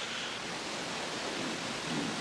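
A steady rushing hiss of noise that comes in suddenly at the start.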